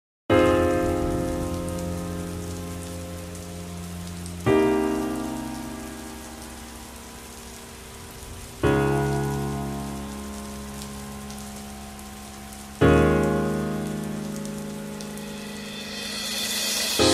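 Slow song intro: four soft piano chords, one struck about every four seconds and each left to ring and fade, over a steady hiss of rain. A rising swell builds near the end.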